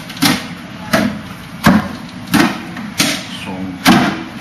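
Arms striking the wooden arms and trunk of a Wing Chun wooden dummy: six sharp wooden knocks at an even pace, about one every two-thirds of a second.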